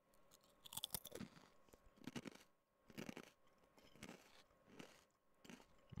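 Close-miked chewing of crunchy potato chips, with a soft crunch about once a second.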